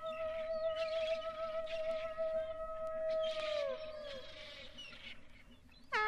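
Synthesizer music: a long held synth note with vibrato that bends downward and fades out about four seconds in, over scattered high swishing and chirping effects. A new synth chord comes in sharply at the very end.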